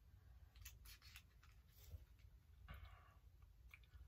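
Near silence, with a few faint clicks and a soft scrape of a metal fork cutting into food on a plate.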